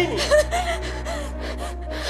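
A woman crying: a run of gasping, sobbing breaths with short wavering whimpers.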